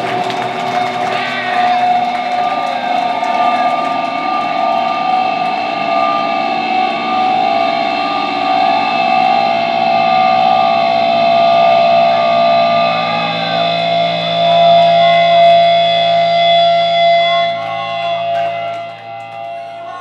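Electric guitars and bass through stage amps, ringing out in long sustained feedback and held notes as the band's closing wall of noise at the end of the set, without drums. The drone fades away over the last couple of seconds.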